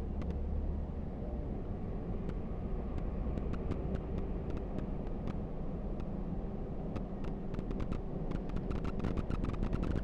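Moving bus heard from inside the cabin: a steady low engine hum and road rumble, with many short sharp rattles, thick near the start and the end and fewer in the middle.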